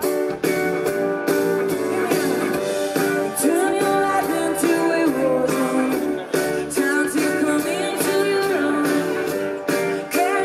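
Live pop-rock band playing through a festival PA: electric guitars over keyboard and drums.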